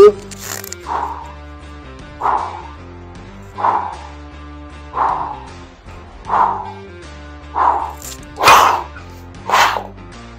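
Short, forceful breaths, about one every second and a half, from a man holding two kettlebells overhead in a static lockout, over steady background music. The loudest breath comes near the end.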